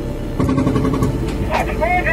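A heavy armoured vehicle's engine running steadily, with men's voices calling out over it in the second half.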